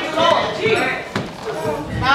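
Unclear voices with a single sharp knock about a second in.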